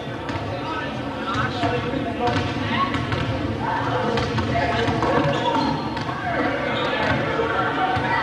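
Basketballs bouncing on a hardwood gym floor, heard among the overlapping chatter of many voices.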